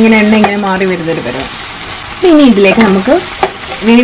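Chopped onions sizzling in oil in a frying pan, stirred with a wooden spatula. A person's voice talks over it and is louder than the frying, with a long drawn-out word in the first second and a short phrase about halfway through.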